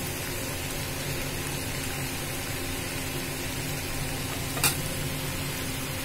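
Bitter gourd and potato slices frying slowly in oil in a steel pan over a low flame: a steady, soft sizzle. There is a single brief click about four and a half seconds in.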